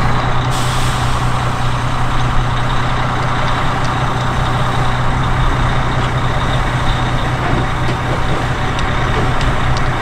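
Small diesel shunting locomotive's engine running steadily as it pulls slowly away, with a short hiss about half a second in.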